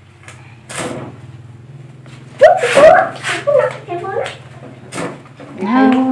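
Large knife chopping meat on a wooden log chopping block: a few sharp chops, spaced a second or more apart. A voice sounds briefly in the middle and is the loudest thing.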